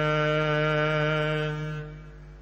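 Sikh Gurbani kirtan: a long sung note held steady at the end of a line, fading away near the end.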